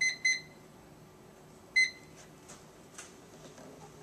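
Life Fitness treadmill console beeping as its keypad buttons are pressed: two short beeps in quick succession right at the start, and a third just under two seconds in, followed by a few faint clicks.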